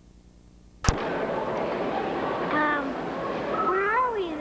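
A single sharp click about a second in as the camcorder recording starts, then the steady babble of a busy shopping mall with a few voices.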